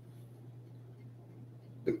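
Quiet pause in a man's talk: room tone with a steady low hum. His speech resumes just before the end.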